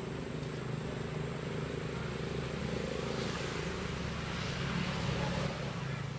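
A motor engine droning steadily, growing louder past the middle.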